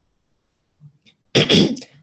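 A person sneezing once, a short loud burst about a second and a half in.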